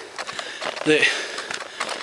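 A man's voice making one short vocal sound about a second in while he walks, with light crunching footsteps on a dirt trail.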